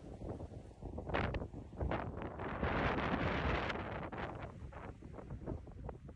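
Wind buffeting the microphone of an outdoor video clip, a rough, rumbling rush that swells louder about halfway through.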